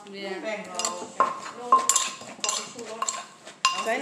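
Wooden pestle and metal spoon knocking against a clay mortar while shredded green papaya salad is pounded and tossed: about six irregular sharp knocks, several leaving a short ring.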